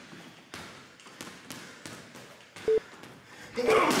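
Boxing gloves punching a heavy bag in a steady string of hits, about three a second. Near the end come two short beeps about a second apart, then a man laughing.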